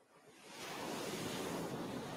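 Ocean surf: a rush of a wave swelling up about half a second in, then slowly ebbing away.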